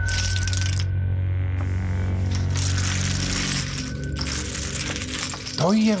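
Background music under the clatter of casino chips being pushed and stacked on a roulette table, in three bursts; a man's voice starts right at the end.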